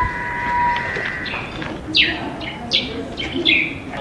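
Birds calling: a held whistle-like note that fades out about a second in, then several quick falling chirps.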